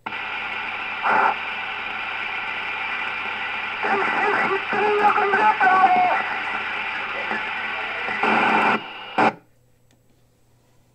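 A K-PO DX 5000 CB radio receiving an FM transmission. The squelch opens suddenly onto a hissy, noisy signal with a weak voice in the middle and louder surges about a second in and near the end. It cuts off abruptly about nine seconds in, just after a short final burst.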